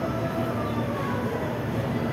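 Garib Rath Express passenger coaches rolling past along a platform: a steady rumble of wheels on the rails.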